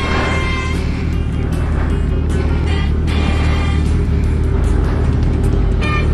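A sport motorcycle's inline-four engine running steadily as the bike rolls slowly down an alley, with wind noise on the helmet microphone. Music plays along with it.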